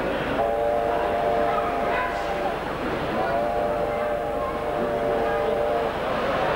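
Model railway diesel locomotive horn sound, a chord of several steady tones blown twice, each blast about two seconds long, over the chatter of a crowded hall.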